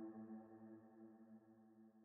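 Background music: a held ambient chord fading out to near silence.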